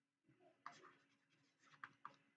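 Faint scratching of a stylus writing on a tablet: a few short strokes about two-thirds of a second in and again near the end, with near silence between them.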